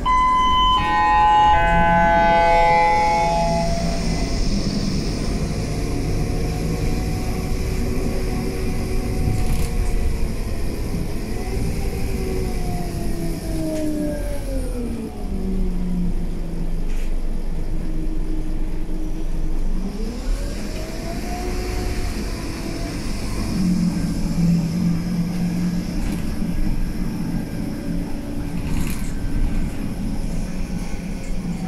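Scania K320UB city bus running, heard from inside the saloon. A multi-note electronic chime sounds at the start. The engine and gearbox pitch then rises as the bus gathers speed, falls back as it slows, rises again as it pulls away, and settles into steady running.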